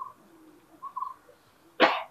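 A single short cough near the end of a pause, with two faint brief tones about a second earlier.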